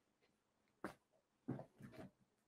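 Near silence: room tone, broken by two faint, brief sounds, one a little under a second in and one about a second and a half in.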